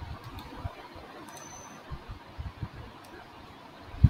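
Faint computer mouse clicks and soft low thumps over a steady quiet room hiss.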